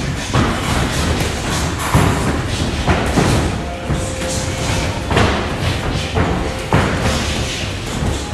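Boxing gloves landing punches on an opponent's gloves and guard in sparring, a string of sharp thuds, the loudest about two seconds in, over music.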